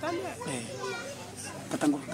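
Speech, with children's voices in the background.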